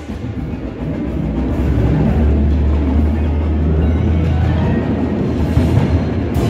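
Indoor percussion ensemble playing, with a deep sustained low rumble that swells from about two seconds in and fades near the end.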